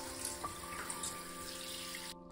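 Shower water running while a puppy is bathed on a tiled floor, a steady hiss, over soft background music with held notes.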